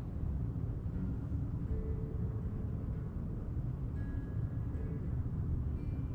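Steady low room rumble, with a few faint held tones coming and going above it.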